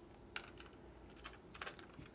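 A few faint, scattered small clicks and taps of fingers handling a small plastic electronic device.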